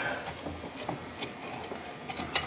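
A few faint, light metallic clicks as a piston ring and ring-expander pliers are handled on a Ford Model T piston, the ring seating in its groove and the pliers being repositioned.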